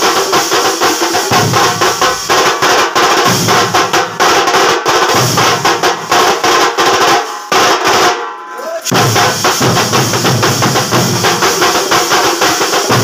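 Thambolam percussion band: many drummers beating large barrel drums and smaller stick-played drums together in a fast, loud rhythm. The deep drums drop out briefly about eight seconds in, then the full beat comes back.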